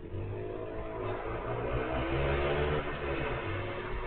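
A motor vehicle's engine revving up, its pitch rising for nearly three seconds to the loudest point, then falling away.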